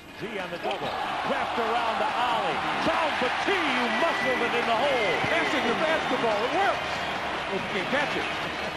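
Basketball arena game sound: a steady crowd noise of many voices, with a basketball bouncing on the hardwood court.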